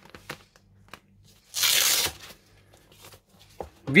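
A hook-and-loop (Velcro) wrist strap over a lace-up boxing glove's laces ripped open once, a burst about half a second long near the middle. Light handling clicks and rustles of the leather glove come before and after it.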